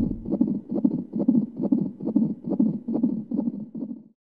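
Fetal heartbeat heard through a Doppler ultrasound: a fast, even pulsing of about three beats a second.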